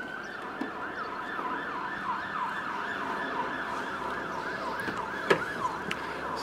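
Emergency vehicle siren in a fast warble, rising and falling about three to four times a second.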